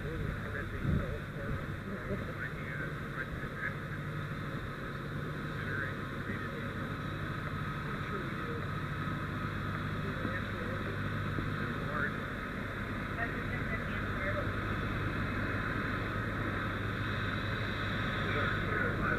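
Steady low hum of idling diesel fire apparatus engines, continuous and even in level.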